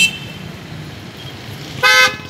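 Low rumble of road traffic, with a short vehicle horn toot near the end and a brief high-pitched toot at the very start.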